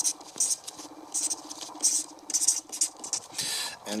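Felt-tip marker squeaking and scratching on paper while writing, in a series of short separate strokes with one longer stroke near the end.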